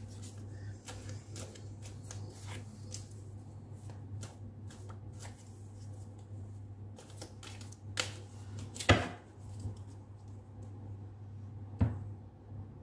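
Hand-shuffling a deck of round tarot cards: a continuous run of soft rustles and light card snaps, with a louder sharp tap about nine seconds in and another near the end. A steady low hum sits underneath.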